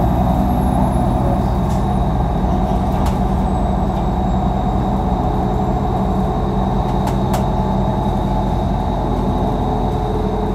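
Interior of a 2016 Nova Bus LFS city bus running: a steady low engine and road drone with a constant thin high whine, and a few light rattles about three and seven seconds in.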